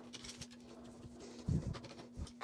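Steel F-clamp being unscrewed and loosened: faint small clicks and scrapes from the screw and handle, with one dull knock about one and a half seconds in, over a faint steady hum.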